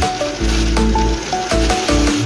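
Background music: an instrumental track with a pulsing bass line and short melodic notes over a steady hiss.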